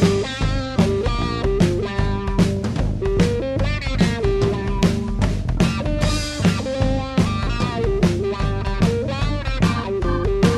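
Rock band playing an instrumental passage of psychedelic hard rock: a riffing electric guitar over bass and a steadily beating drum kit, with no singing.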